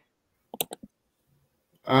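A few short clicks in quick succession about half a second in, amid silence. A man starts speaking at the very end.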